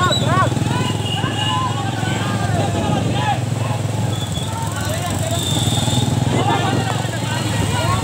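Several voices calling out in short rising-and-falling shouts over a steady low rumble.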